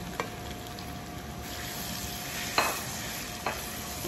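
Boiled potatoes sizzling in hot spiced oil in an aluminium karahi, stirred with a spatula, with three short knocks against the pan, the loudest about two and a half seconds in. The sizzle grows fuller about a second and a half in.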